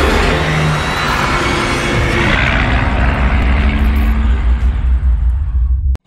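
Loud intro soundtrack music over a heavy low rumble. The high end dies away across the passage, and it cuts off suddenly near the end.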